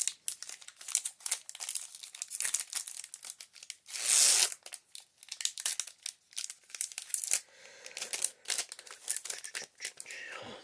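Foil wrapper of a Magic: The Gathering Unstable booster pack crinkling in the hands and being torn open, the loudest rip about four seconds in, with more crackling as the pack is worked open.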